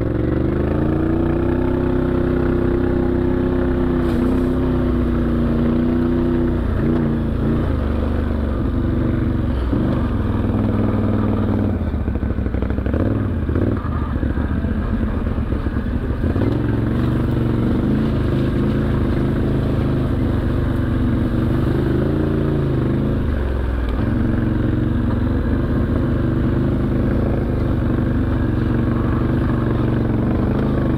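ATV engine running under way, its pitch rising and falling as the rider speeds up and eases off. There is rattling over rough, rocky ground about halfway through.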